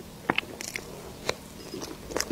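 Close-miked chewing of a mouthful of rainbow mille-crêpe cake: soft, sticky mouth sounds broken by a few sharp clicks, the loudest about a quarter second in and again just past a second.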